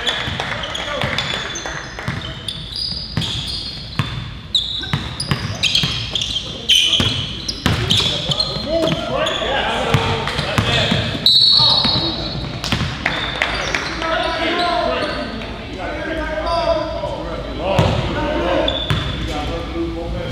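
Basketball dribbled on a hardwood gym floor, with repeated sharp bounces echoing in the large hall. Sneakers squeak now and then, and players' voices call out indistinctly.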